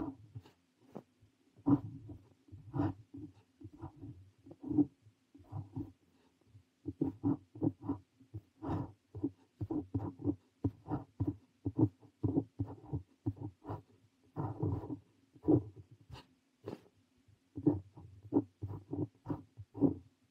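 Parker 45 fountain pen nib scratching across notebook paper in short, irregular strokes as Korean characters are handwritten, with brief pauses between letters. A faint steady low hum runs underneath.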